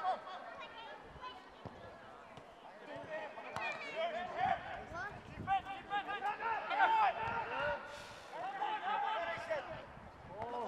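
Indistinct shouts and calls from footballers during play, busiest in the second half of the stretch, with a few sharp thuds of the ball being kicked.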